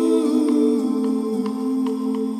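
Soft soundtrack music of slow, sustained held notes that shift pitch a couple of times.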